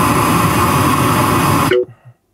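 A loud, steady rushing noise with a faint hum in it plays through the car's audio system. It is a noise-like track that breaks off abruptly near the end as the next track is selected.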